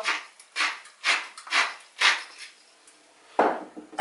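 Hand-twisted pepper mill grinding black pepper in five short, even grinding bursts about two a second, then stopping. A single short rustle follows near the end.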